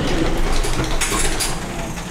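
A wheelchair rolling and turning on the floor of a lift car: a steady rumble and rattle with a few knocks about a second in.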